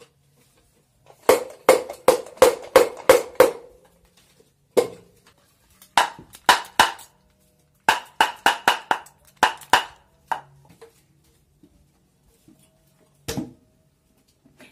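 Hinged wooden jaw of a caplokan mask (Javanese bantengan/barongan mask) snapped shut by hand, making sharp hollow wooden clacks. They come in quick runs of several, about three to four a second, with pauses between runs, and a single clack near the end.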